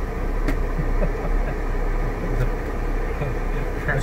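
A 4x4's engine running low and steady as it crawls along a sandy dirt trail, heard from inside the cab as a constant low hum.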